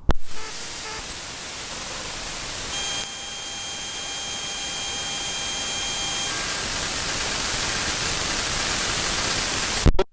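Loud, steady static hiss that slowly grows louder, with faint steady whistling tones for a few seconds in the middle; it starts and cuts off abruptly.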